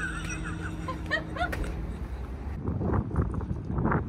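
A woman laughing in short, high-pitched bursts, then wind rumbling on the microphone in the second half.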